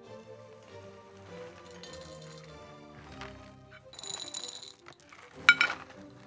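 Soft electric guitar notes played through an EarthQuaker Devices Rainbow Machine pitch-shifting modulation pedal, with a short rattle of dry cereal about four seconds in and a sharp clink of glass on ceramic near the end as milk is poured from a glass bottle into the bowl.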